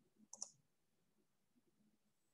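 A computer mouse clicking, two quick clicks close together about half a second in, then near silence.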